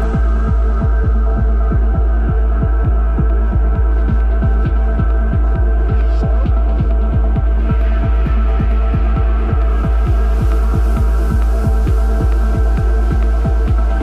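Electronic dance music in a DJ mix: a heavy, steady sub-bass drone under sustained chord tones, driven by rapid, evenly spaced percussive hits. The treble is filtered away at first and opens up again about two-thirds of the way through.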